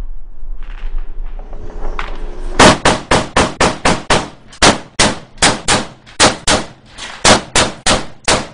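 Rapid gunfire: a long run of sharp shots at about four a second with brief pauses, starting about two and a half seconds in.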